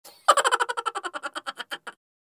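Comic sound effect: a quick run of about ten pitched pulses a second that starts suddenly and fades away over about a second and a half.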